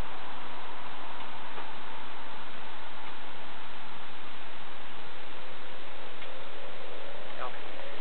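Steady hiss of a wireless microphone on a police recording, with no distinct sound event.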